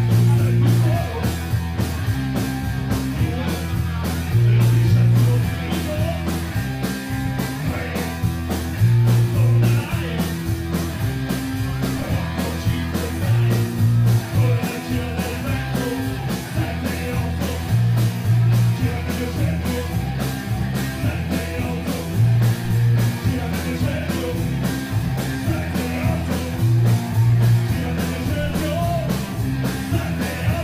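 Live rock band playing: electric guitar, keyboard, bass and drums keeping a steady beat, with a lead vocal over them.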